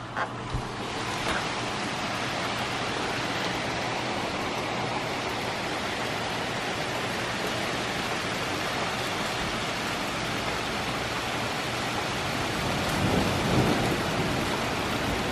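Heavy rain falling steadily on trees and foliage, a dense, even hiss with no break.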